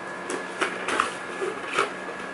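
A cardboard box being opened by hand: a few short scrapes and taps as its flaps are lifted.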